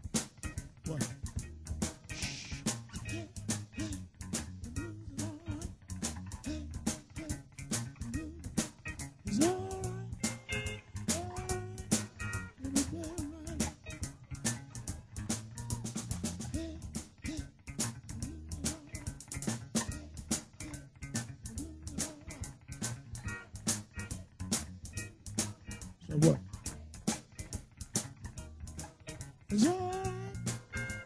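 Live electric blues band playing a steady groove: electric guitar, bass guitar and drum kit, with guitar notes bending upward about ten seconds in and again near the end.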